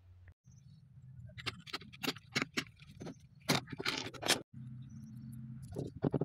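A run of sharp clicks and light metallic rattles, the sound of tools and hardware being handled, over a low steady hum.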